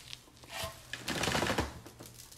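Loose salt being tipped off glue-covered paper and pattering onto a paper plate: a dense run of small clicks starting about half a second in.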